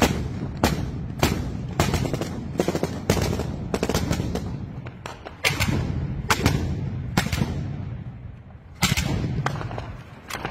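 Gunfire: a string of sharp gunshots, single shots and close pairs, about one to two a second, each trailing off briefly, with a short lull shortly before the end.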